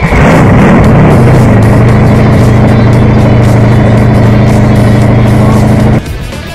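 Radial engine of a custom chopper motorcycle, very loud, revving up over the first second or so and then held at steady high revs.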